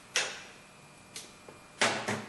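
A sharp metallic clack that dies away over about half a second, then two faint ticks, from a hand tool being handled at the battery terminals.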